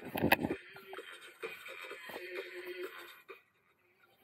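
A man's voice briefly at the start, then faint, indistinct room noise that cuts off abruptly to near silence a little past three seconds in.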